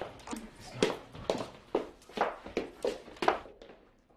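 Hurried footsteps, about two steps a second, fading away near the end.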